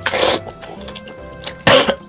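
Two loud slurps of spicy instant noodles being sucked into the mouth, one at the start and one near the end, over quiet background music.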